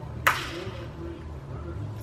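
A single sharp tap, as of a small plastic game piece or die set down on a cardboard game board, over a low steady hum.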